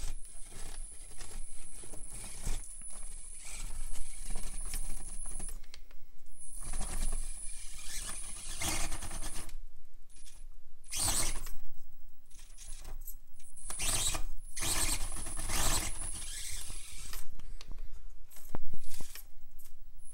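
Axial AX24 micro RC crawler climbing stepped rock: a thin, high electric-motor whine that comes and goes in several stretches with the throttle, over clattering and scraping of tyres and chassis on the rock.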